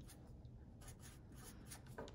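Fine-point Sharpie marker writing on paper: faint, short strokes of the felt tip rubbing across the sheet as words are written.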